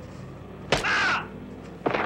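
Fistfight sound effects: a sharp blow lands and is followed at once by a man's short, raspy yell of pain; a second blow lands near the end.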